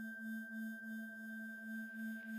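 Quiet breakdown of a progressive house track: a single low held synth tone that swells gently about three times a second, with fainter high steady tones above it.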